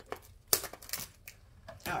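Plastic-wrapped toy package being handled: a few short, sharp crinkles and clicks of the wrapping.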